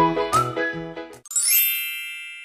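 A short, bouncy cartoon-style intro tune with plodding alternating bass notes breaks off about a second in and gives way to a bright, sparkly chime that rings and slowly fades.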